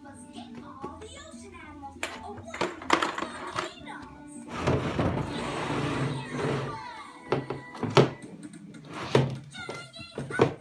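A child's plastic table and chair knocking against a wooden floor in several hollow thunks, with a stretch of scraping in the middle as the furniture is pushed about. Background music and a child's voice run underneath.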